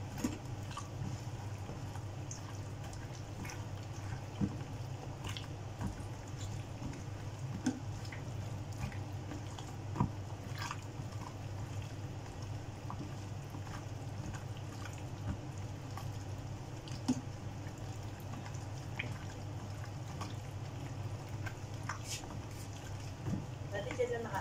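Hands mixing raw squid rings through beaten egg and seasoning in a plastic tub: scattered wet squelches and small clicks. A steady low hum runs underneath.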